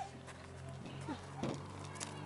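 Soft knocks and scrapes of a toddler's boots and body against a plastic playground slide, with a couple of short vocal sounds from the child, over a faint steady hum.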